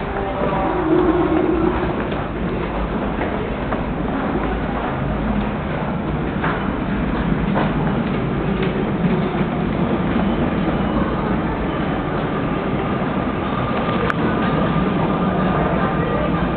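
Subway station ambience: a steady low rumble with scattered footsteps on tile and stairs. A thin steady tone comes in near the end, and a single sharp click sounds shortly before the end.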